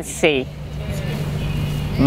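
Minibus engine idling: a steady low hum with a faint rumble, after a short spoken word at the start.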